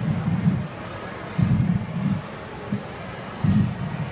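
Low, muffled thuds of air buffeting a close head-worn microphone, about three of them roughly two seconds apart.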